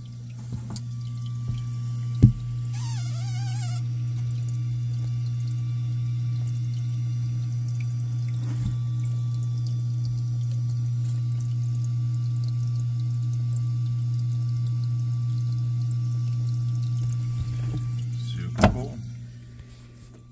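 Paludarium water pump running with a steady low hum and water flowing. There is a knock about two seconds in and another near the end, and a brief warbling whistle around three seconds in.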